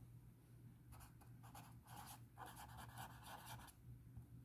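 Felt-tip pen writing a word on paper: faint scratchy strokes that start about a second in and stop shortly before the end.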